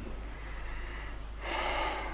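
A man drawing a quick breath close to a microphone, a short hiss about a second and a half in, over a steady low hum.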